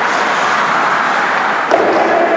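Steady, noisy hiss of an indoor ice rink during a hockey game, with a sharp knock about 1.7 seconds in and a man's voice starting just after.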